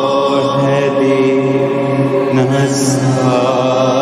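Christian devotional worship song (bhajan): voices singing long, held notes with a slight waver, over musical accompaniment.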